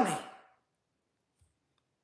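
The last words of a woman's sentence fade out in the first moment, then near silence with a faint click about a second and a half in.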